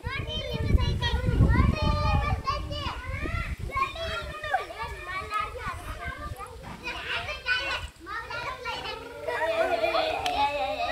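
A group of children talking and calling out all at once, many high voices overlapping. Wind rumbles on the microphone during the first few seconds.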